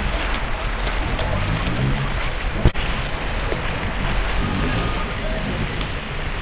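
Steady rushing noise of rain and floodwater sloshing around people wading through a flooded street, with faint voices. A single sharp knock comes about halfway through.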